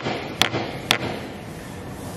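Edge of a melamine-faced particleboard panel knocked against a hard surface: two sharp knocks about half a second apart in the first second, shaking the board while a plastic biscuit sits knocked into its edge.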